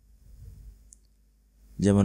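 A quiet pause with one brief, faint click about a second in; a voice then starts speaking near the end.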